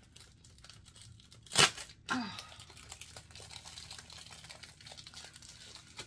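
Cosmetic packaging crinkling and rustling as it is handled, in small crackles, with one loud, sharp rustle about one and a half seconds in.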